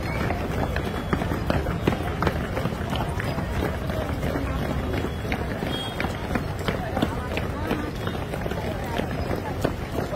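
Many boots of a column of police jogging on a paved road, with quick, overlapping footfalls. Voices are mixed in.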